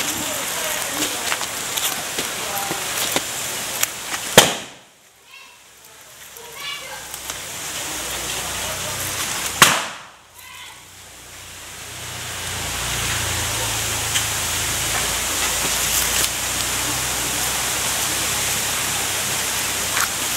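A steady hiss of background noise, broken by two sharp knocks about five seconds apart, each followed by a brief lull.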